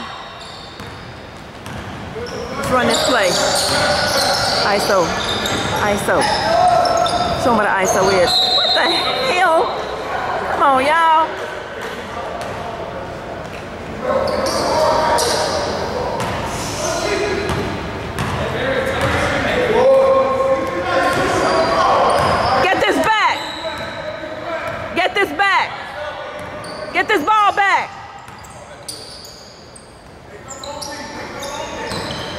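A basketball being dribbled on a hardwood gym floor during play, with indistinct shouts from players and spectators, echoing in a large gym.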